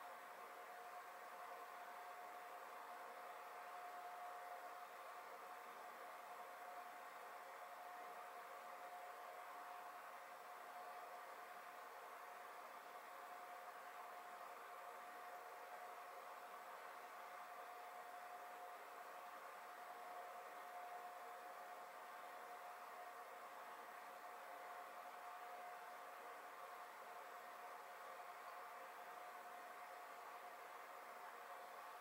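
Near silence: room tone, a faint even hiss with a thin steady tone held unchanged throughout.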